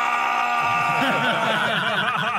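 A group of men laughing, over a long, steady held note that stops about a second in.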